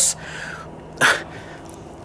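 A man's quiet, breathy laugh, with one short, sharp exhale about a second in.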